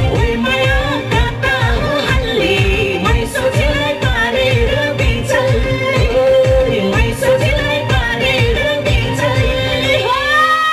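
A woman singing a Nepali song live into a microphone over amplified backing music with a steady beat.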